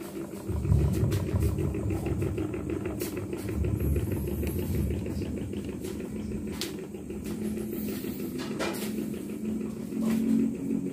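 Electric standing fans running: a steady motor hum, with a low rumble of moving air on the microphone through the first half and a few sharp clicks.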